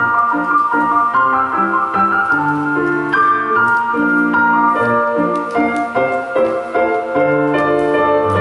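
Piano music playing a flowing run of notes, several to a second, with no singing.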